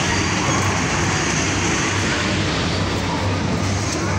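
Steady din of an electric bumper-car ride running, with a constant low hum throughout.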